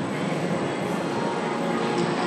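Steady, even background noise of a large indoor riding arena, with no distinct hits or calls standing out.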